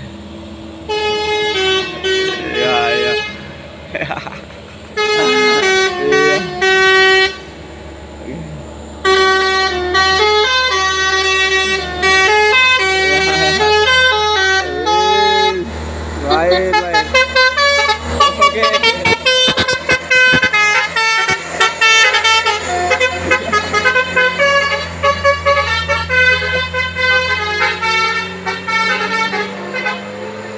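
A truck's multi-tone musical air horn ("telolet" horn) plays a tune of held notes that change pitch in steps, with short gaps between phrases and quicker notes in the second half. A diesel truck engine runs low underneath.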